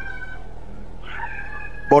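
Soft held keyboard notes, a few steady high tones together, playing under a pause in the preaching. They break off about half a second in and come back a little after a second, with a steady low hum underneath, until the preacher speaks again at the very end.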